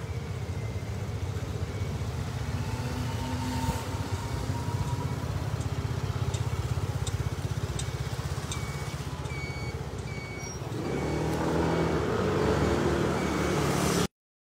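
Motor scooter engines running close by in city street traffic, a steady low rumble. Short electronic beeps repeat through the middle, and the traffic noise grows louder for the last few seconds.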